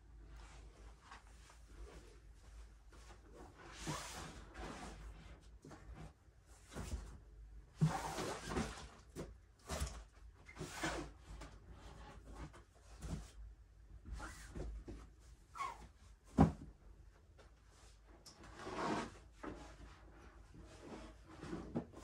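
Irregular knocks, bumps and rustling as fabric storage bins and small furniture are picked up, carried and set down, with one sharper knock about two-thirds of the way through.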